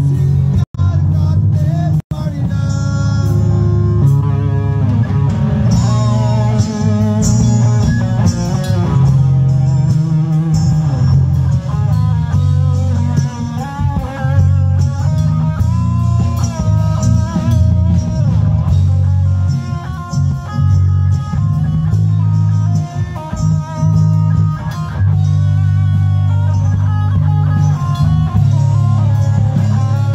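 A live rock band playing loudly through a PA: an electric guitar carries a bending, wavering melody over a heavy bass guitar and drums. The sound drops out for an instant twice in the first two seconds.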